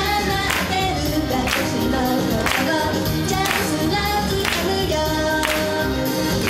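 Young female idol group singing in unison into microphones over a pop backing track with a steady beat, performed live.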